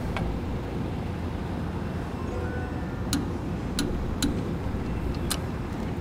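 Torque wrench clicking on the brake backing-plate nuts as they come up to torque: a handful of sharp single clicks, mostly in the second half, over a steady low hum.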